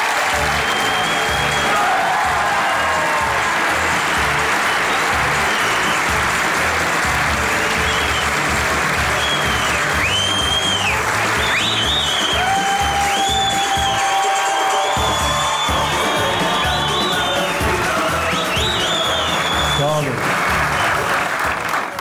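Theatre audience applauding over entrance music with a steady beat.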